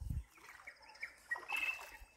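A bird calling in short, high, steady-pitched notes that begin about a second and a half in, after a soft low thump at the start.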